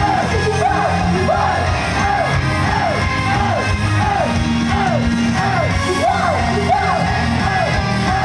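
Live idol-pop performance: an upbeat backing track over the PA with a bouncing high riff repeating about twice a second, the singer's voice and audience shouts over it.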